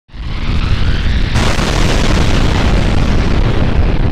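Intro logo sound effect: a loud, deep rumbling burst like an explosion or fire whoosh. It builds with a faint rising sweep, turns suddenly brighter and fuller about a second and a half in, then rumbles on steadily.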